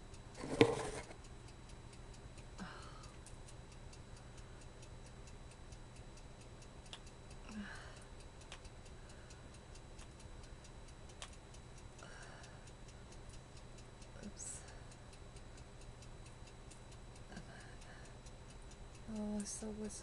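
Steady, even clock ticking in a quiet room, with one sharp click about half a second in and a few faint rustles as small items are handled.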